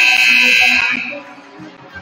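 Gymnasium scoreboard horn sounding one long, loud, steady buzz that cuts off about a second in, signalling the end of a timeout.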